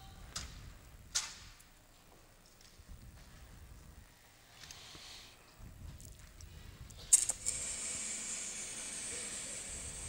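Gymnasium ambience with a couple of sharp clicks in the first second or so. About seven seconds in comes a loud click, and a steady high hiss follows: a sound system coming on ahead of the recorded national anthem.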